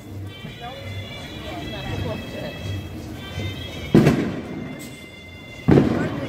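Two sharp firecracker bangs, the first about four seconds in and the second under two seconds later, each trailing off briefly.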